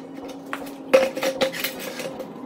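Several clinks and knocks of hard objects being handled, the loudest about a second in, followed by a few lighter ones.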